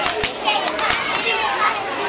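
Many young children's voices overlapping, with three sharp hand claps in the first second.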